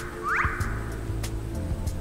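Cartoon background music with held bass and chord notes and a light ticking beat. A short rising swoop sound effect comes about half a second in.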